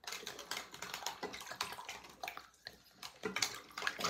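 A hand splashing and stirring shallow water in a sink among plastic markers: a run of small irregular splashes and light clicks.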